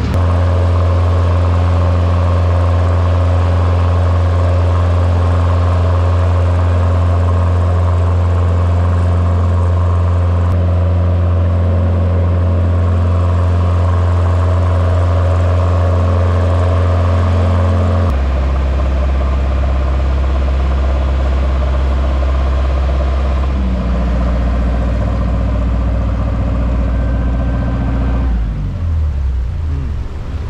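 Small passenger ferry's engine running under way, a steady low drone heard from on board with water rushing along the hull. About 18 seconds in the engine note drops lower, and near the end it eases off.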